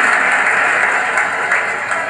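Large theatre audience applauding, a dense, steady clapping that eases slightly toward the end, heard through a television's speaker.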